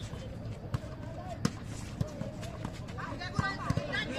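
Volleyball rally: several sharp slaps of hands and arms striking the ball, spaced roughly half a second to a second apart, with players calling out near the end.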